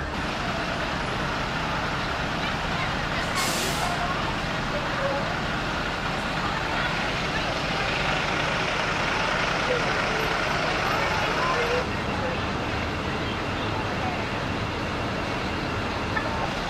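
Diesel school bus engines running, with a short hiss of air brakes about three and a half seconds in. The engine noise drops somewhat about twelve seconds in.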